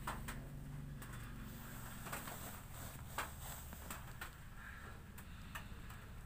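Electric hair clipper running with a faint, steady low hum, with scattered light clicks through it.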